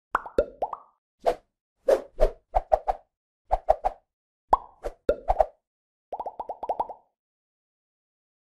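A string of short cartoon-style pop and bloop sound effects for an animated logo intro, coming in small clusters, some sliding down in pitch. They end in a rapid run of about ten pops about six seconds in.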